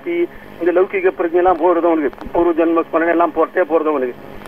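Speech only: a man speaking, with brief pauses between phrases.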